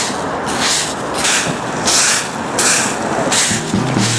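Dry fallen ginkgo leaves rustling and crunching in regular swishes, about three every two seconds. Music comes in near the end.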